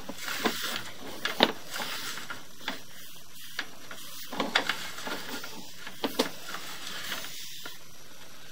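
Sewer inspection camera's push cable being fed into the line by hand: irregular clicks and rubbing over a steady hiss.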